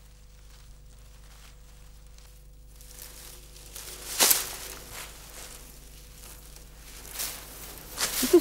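Stiff berceo grass (Stipa gigantea) rustling and tearing as tufts are wound on a stick and pulled out of the ground by hand. The rustles start about three seconds in, with the loudest rip about four seconds in and smaller ones after.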